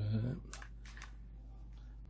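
A few small clicks of plastic parts being handled as a small servo is fitted into a plastic pan-and-tilt camera mount, over a low steady hum.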